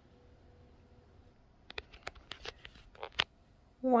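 Light handling noises: a quick run of about ten short clicks and rustles over a second and a half, as the sewn fabric-and-vinyl bag panel is handled, after a near-silent start.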